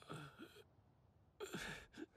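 Two quiet breathy gasps from a man, each about half a second long, the second about a second and a half in.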